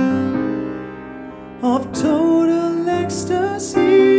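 Soul band playing a slow passage: a held keyboard chord fades away, then a singer's voice comes in a little before halfway, and the band swells back up near the end.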